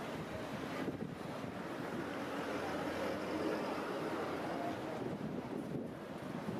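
Steady road-traffic noise from a busy multi-lane city street: a continuous rush of passing cars and trucks.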